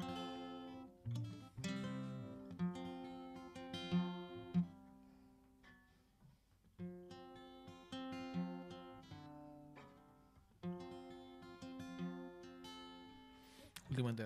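Acoustic guitar strumming chords that ring and die away, the same short phrase played twice, as a try-out of whether the guitar, which has been hard to keep in tune, will hold up for the song.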